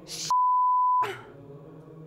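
Broadcast censor bleep: a single steady, mid-pitched beep under a second long that masks a swear word. It cuts in about a third of a second in, just as the word begins with a short hiss.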